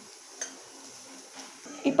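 Quiet room tone with a single light knock about half a second in, a wooden spatula tapping a nonstick pan of melting jaggery, and a fainter tap a second later.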